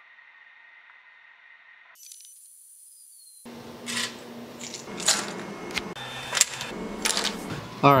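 A few seconds of faint hiss, then from about three and a half seconds in a string of sharp clicks and light clatter. This is the flexible removable build plate of a Creality Ender 3D printer being handled.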